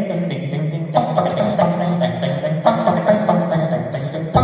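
A cappella group singing a fast, improvised bluegrass-style number, with low vocal parts held steady. About a second in, a brighter layer of beatboxed percussion joins.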